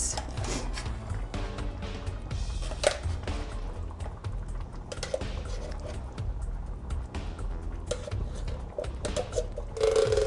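Soft background music under repeated light metallic clicks and scrapes as a metal spoon scrapes drained kidney beans out of a tin can and into a pot.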